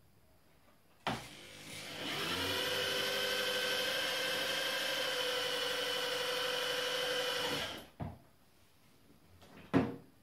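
Cordless drill driving a drill-powered oil pump to prime the LS3 engine's oil system through its oil gallery: after a click it spins up over about a second into a steady whine, runs for about six seconds, then stops. A couple of short clicks follow.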